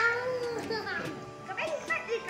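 A child's high-pitched squeal that starts suddenly and is held for about half a second, sliding slightly down in pitch, followed by more short children's voice sounds near the end.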